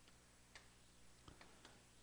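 Very faint, irregular clicks of chalk tapping and scratching on a chalkboard while a word is written.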